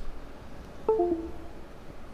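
Computer alert beep: a short chime of two falling notes about a second in, going off by itself without any input.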